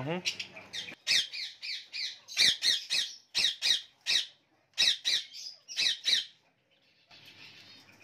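Small parrots in an aviary squawking: a quick run of short, high, harsh calls in clusters, beginning about a second in and stopping about six seconds in.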